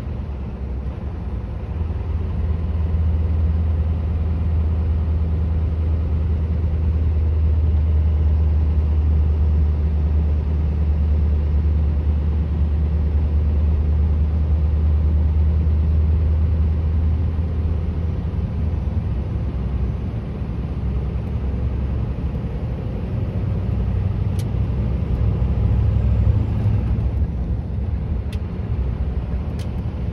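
Scania V8 truck engine running with a steady low drone heard inside the cab, over road and tyre noise, getting louder about two seconds in.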